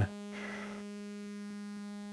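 A sawtooth-wave synth tone run through the BMC105 12-stage JFET phaser with its resonance turned down: a steady buzzing tone rich in overtones while the phaser's frequency knob is turned down by hand. A faint hiss passes just under a second in.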